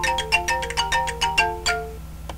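A computer alert jingle of quick, marimba-like notes, about six a second, stopping near the end. It plays as DVD Decrypter reports its rip finished, signalling that the job is complete. A steady low electrical hum runs beneath it.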